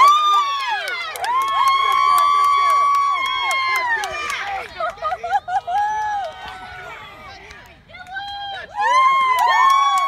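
Spectators yelling and cheering during a youth baseball play, several voices overlapping in long drawn-out shouts. The shouting dies down around two-thirds of the way through, then swells again near the end.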